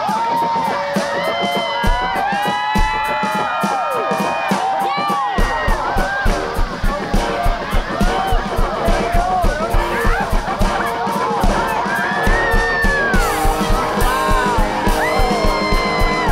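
Electric guitar playing with bent, gliding notes, joined about five seconds in by a steady beat on an electronic drum kit, with a short break in the drums near the twelve-second mark.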